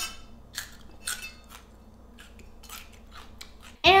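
Kitchen knife chopping a celery stalk on a wooden cutting board: a series of short, sharp knocks of blade on wood, roughly two a second and unevenly spaced.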